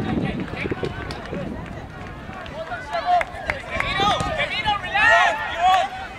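Several voices shouting across an open sports field, high-pitched and loudest from about halfway through; wind rumbles on the microphone in the first seconds.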